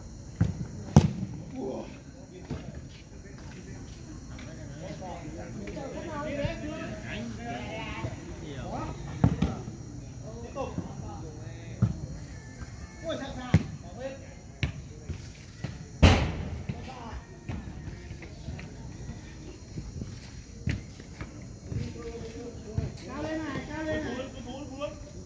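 A football being kicked during a small-sided game: sharp thuds every few seconds, the loudest about two-thirds of the way in, with players shouting on the pitch.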